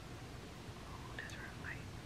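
Quiet room tone with a brief faint whispered voice about a second in.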